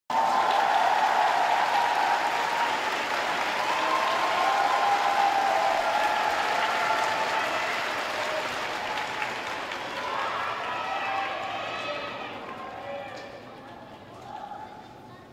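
Arena audience applauding and cheering for a figure skater, loud at first and dying away steadily over the last several seconds.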